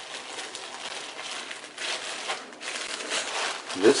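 Clear plastic bags of crimp connectors crinkling and rustling irregularly as they are handled and pulled out of a box.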